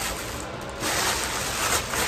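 Thin plastic bag crinkling and rustling as a jar is pulled out of it, a little louder from about a second in.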